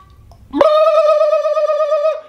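A person holding one high, steady vocal note, a falsetto squeal with a slight waver. It starts about half a second in and lasts about a second and a half.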